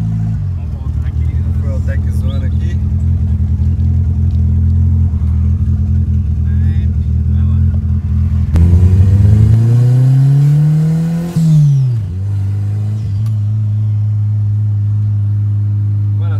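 Turbocharged VW Voyage engine with a straight exhaust, heard from inside the cabin, running under load. About halfway through it revs up in a rising pitch for about three seconds of hard acceleration, then drops off sharply with a brief loud burst as the throttle is lifted, and settles to a steady drone.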